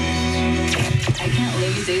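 Country radio broadcast playing through desktop computer speakers. A held music chord breaks off about two-thirds of a second in with a few sharp clicks and quick falling swoops, and a new music bed follows.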